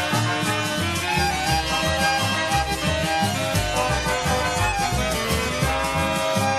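Instrumental passage of Argentine folk music: a sustained melody line over a steady, repeating bass pulse, with no singing.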